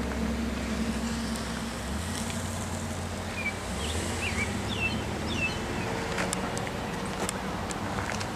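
A low, steady mechanical hum, like a vehicle engine running nearby. Several short, quick bird chirps come about halfway through.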